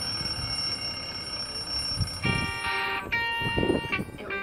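Quiet passage of marching-band show music: a high held tone, then soft bell-like chords entering about two seconds in.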